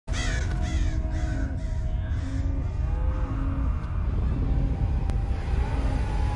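Harsh bird calls, repeated about twice a second and fading away over the first couple of seconds, over a deep steady rumble and dark, ominous soundtrack music.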